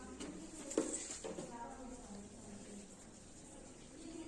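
A young child's voice making short sounds without clear words, with a single knock just under a second in.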